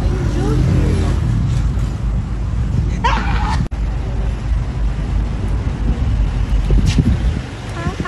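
Loud, rumbling outdoor street noise under scattered voices, with a brief high excited cry about three seconds in. The sound cuts off abruptly just after the cry.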